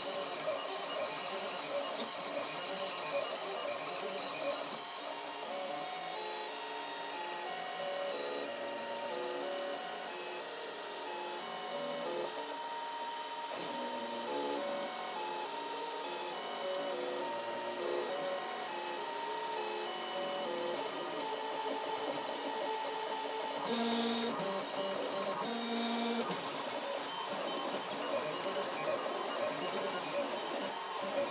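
FDM 3D printer running a print: its stepper motors whine in short stepped tones that keep jumping in pitch as the print head and bed move, over a steady machine hum.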